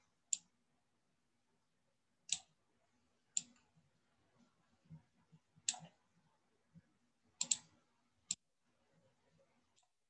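Computer mouse clicking about seven times at irregular intervals, with two clicks close together near the end, while objects are selected and dragged in a graphic design editor. Faint room tone can be heard between the clicks.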